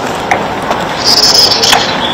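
A pause in speech filled by steady outdoor background hiss, with a brief high-pitched, insect-like chirping about a second in.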